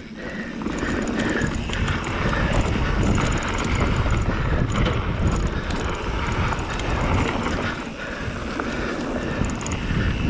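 Wind rushing over the camera's microphone as an electric mountain bike rolls along a dirt trail, its knobby tyres running over loose dirt and small stones. The noise is steady and rises about a second in.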